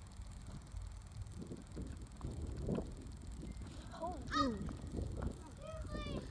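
Wind rumbling on the microphone, with a short child's shout that falls in pitch about four seconds in.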